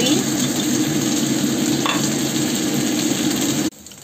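Diced meatloaf and potatoes frying in a nonstick wok, a steady sizzle that cuts off suddenly near the end.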